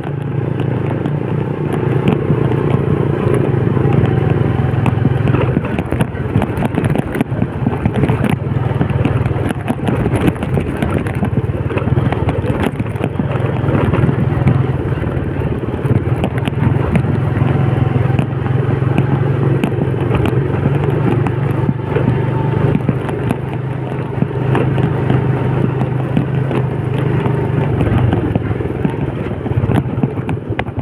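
Small motorcycle engine running steadily at low speed, with frequent rattles and clatter as the bike rides over a rough dirt path.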